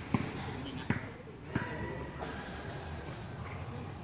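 A basketball bouncing on concrete: three sharp bounces in the first second and a half, each coming a little sooner than the last, then it dies away.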